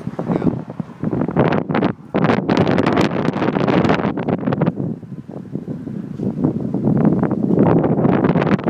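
Strong, gusty wind buffeting the phone's microphone, loud and uneven, rising and falling in gusts, as a thunderstorm approaches.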